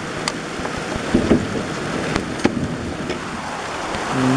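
Rain falling steadily in a downpour, with a few sharp knocks and clicks on top, a cluster about a second in and a couple more around halfway.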